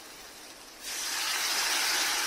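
Food sizzling as it fries in oil in a steel kadai; the sizzle jumps suddenly to a loud, steady hiss a little under a second in.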